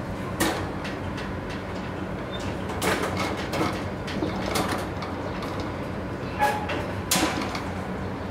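Wire rabbit cage being worked at to open it: a scattering of sharp metallic clicks and rattles from the cage door and latch, over a steady low background hum.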